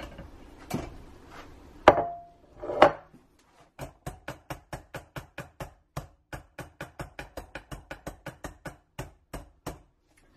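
A few separate knocks, one with a short ring, then a silicone soap loaf mold in its stainless steel wire frame knocked against the countertop over and over in a quick steady rhythm, about four or five knocks a second, with the wire frame rattling.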